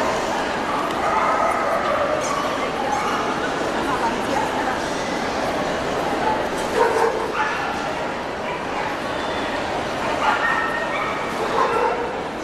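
A dog barking and yapping in short bursts, a cluster about seven seconds in and more near the end, over the steady chatter of a crowd in a large hall.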